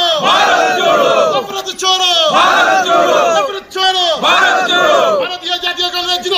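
A crowd of men shouting political slogans in unison, one loud chanted phrase about every second.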